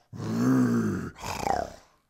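A man imitating a grumpy lion's growl with his voice. There are two growls: a long one that rises and falls in pitch, then a shorter one that falls away.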